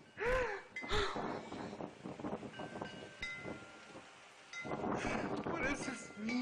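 A man's wordless, emotional exclamations, his voice sliding up and down in pitch with rough breaths between them, as he reacts in awe to a double rainbow. A few faint, brief ringing tones sound behind him.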